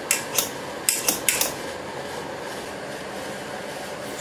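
Several clinks and knocks of a pot lid and utensil against a white enamel cooking pot in the first second and a half. After that a steady whir with no distinct events.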